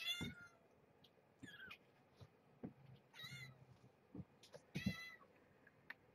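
Young kittens, about two and a half weeks old, mewing as they wake: four short, high-pitched mews spaced across a few seconds.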